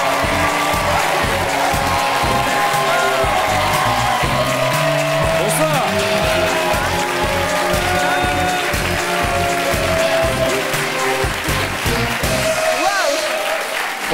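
Upbeat entrance music with a steady beat, played over a studio audience applauding. The beat stops about a second and a half before the end.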